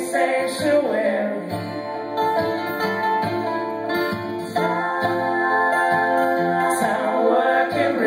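Live acoustic band: strummed acoustic guitar and mandolin, with a man singing.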